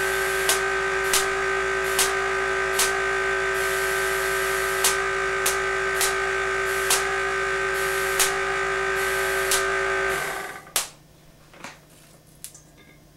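Van de Graaff generator's motor and belt running with a steady multi-tone hum, with sharp clicks about once a second. About ten seconds in the motor is switched off and the hum winds down and stops.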